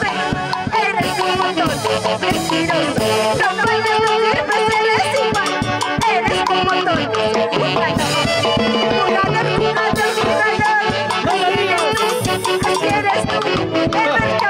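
A woman singing into a microphone over upbeat Latin dance music with a steady beat, amplified through a portable PA speaker.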